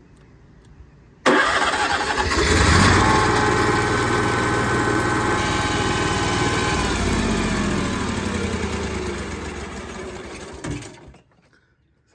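Onan 5500 Marquis RV generator starting about a second in and running steadily for several seconds. It then slows, its pitch falling, and dies away near the end.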